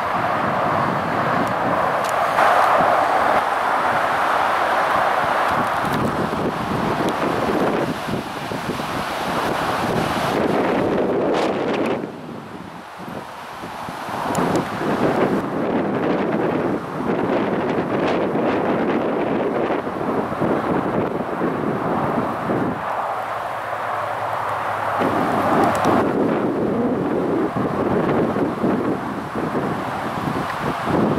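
Strong, gusty wind blowing across the camera microphone, rising and falling, with a brief lull about twelve seconds in.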